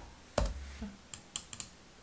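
Computer keyboard keys being typed on: one sharp keystroke about half a second in, then a quick run of four or five lighter keystrokes around the middle.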